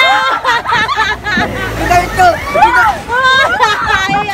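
Several riders on a swinging pirate-ship fairground ride yelling and talking over each other, their voices rising and falling in pitch, with a faint low rumble from the ride partway through.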